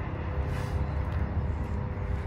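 Steady low rumble of outdoor background noise, with a faint steady hum over it.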